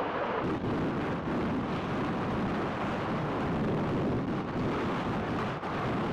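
Ice grinding and crunching along the hull of a 140-foot Bay-class icebreaking tug as it pushes through broken river ice: a steady, rough rumble.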